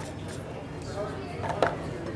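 A few quick hissing spritzes from a small rose water atomizer at the start, over a steady bar-room background. Then a single sharp knock about a second and a half in.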